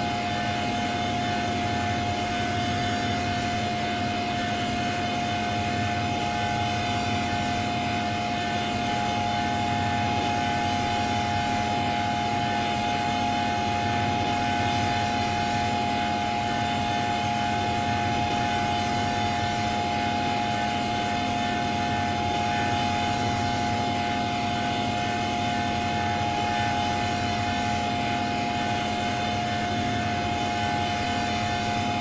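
Heavily effect-processed electronic drone: several held tones over a steady hiss, unchanging throughout.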